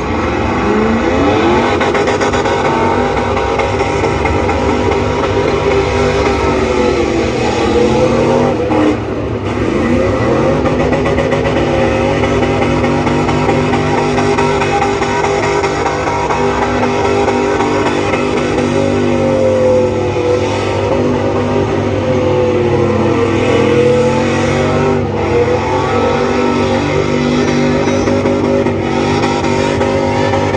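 A car engine revving hard through a burnout, its pitch swinging up and down over and over as the throttle is worked.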